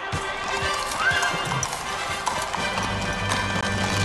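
Horses' hooves clip-clopping on cobblestones as a horse-drawn carriage moves along, over music that gains a heavier bass about two and a half seconds in.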